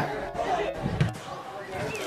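Dull thuds of a football being struck or bounced, with faint voices of players calling on the pitch.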